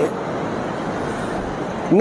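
Steady, even background noise with no distinct events, in a pause in a man's speech; his voice comes back in right at the end.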